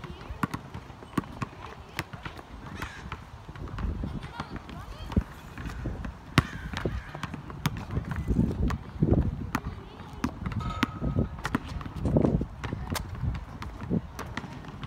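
Basketball bouncing on an asphalt court: a string of sharp slaps at uneven intervals.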